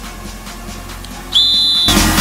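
A single steady whistle blast, about half a second long, about a second and a half in, the signal to take the kick. Loud music with a heavy beat comes in at the same moment.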